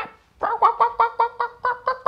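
Ducks quacking: a fast, even run of short quacks, several a second, starting about half a second in.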